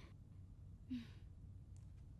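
Near silence with one short, faint breath out, like a sigh, about a second in.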